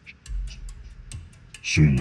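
Steady ticking, about four ticks a second, over a faint low hum. A man says a short word near the end.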